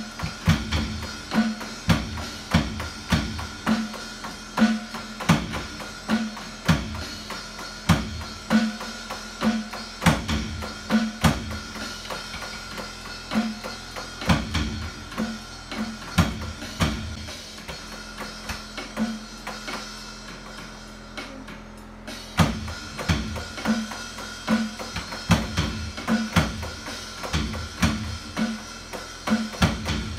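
A drum kit beat, played on an electronic drum kit, over a backing song with guitar: a steady run of bass drum and snare strokes. The low drum strokes thin out for a few seconds past the middle, then the full beat picks up again.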